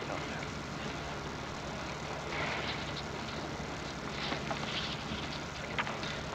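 Steady hiss and low hum of a 1940s archival courtroom recording, with scattered faint clicks and crackles.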